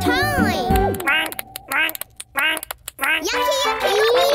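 Children's cartoon background music that drops out about a second in for a run of short, squeaky calls from a cartoon character, each bending up and down in pitch. The music comes back near the end.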